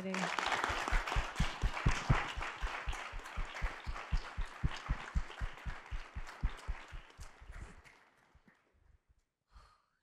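Applause from the audience and the panelists, a dense clatter of many hands clapping that thins out and dies away about eight seconds in.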